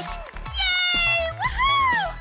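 Two high-pitched vocal calls over background music: a long one that slides gently downward, then a shorter one that rises and falls.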